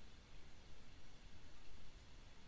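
Faint steady background noise with a low hum, picked up by an open call microphone while no one speaks.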